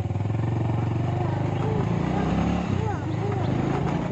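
Small road-vehicle engine running steadily, with a fast even pulse, heard from on board while moving. A few short rising-and-falling tones ride over it in the middle.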